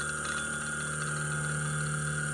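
Size 24 closed-loop stepper motor with a 2.5-inch brass pulley running steadily, a low hum with a fainter high whine above it, driven under encoder-feedback active damping.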